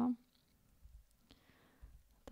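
A few faint computer clicks as presentation slides are paged back, following the tail of a spoken word at the very start.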